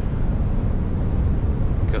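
Steady low rumble of a Scania truck cruising at highway speed, heard from inside the cab: engine drone mixed with tyre and road noise, unchanging throughout.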